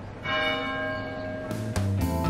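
A church bell struck once, ringing on with a rich cluster of tones that slowly fades.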